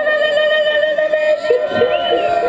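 Dub sound-system music over the PA: one long steady held note, with no beat under it.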